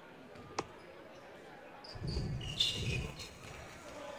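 Basketball on a hardwood gym floor: a single sharp knock about half a second in, then, about two seconds in, the ball bouncing on the court while crowd voices rise briefly after the made free throw.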